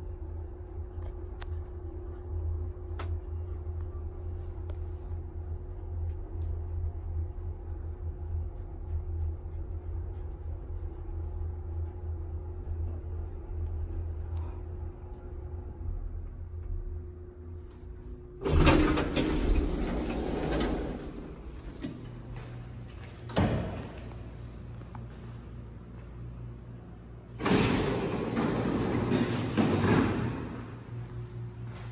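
Vintage elevator running with a steady low hum and a steady tone from its machinery as the car travels. About two-thirds of the way through, the doors slide open loudly for a couple of seconds, then there is a single sharp knock, and near the end another loud stretch of door rumbling.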